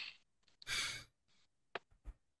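Stifled laughter through a hand over the mouth: a few short breathy puffs of air, the loudest about a second in. A short sharp click follows near the end.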